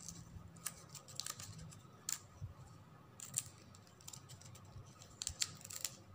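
Scissors snipping off the excess ends of a ribbon ornament: faint, short, sharp snips at irregular intervals, with several close together near the end.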